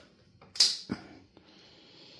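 A sharp plastic click about half a second in, then a softer one, from handling the ATV's new handlebar switch controller and its wiring connectors. A faint steady high hum follows in the second half.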